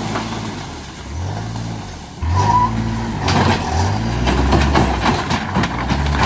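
Kawasaki Mule utility vehicle's engine revving up three times as it pulls under load, towing a corrugated metal panel on a rope. From about halfway, the dragged sheet metal clatters and scrapes over the ground.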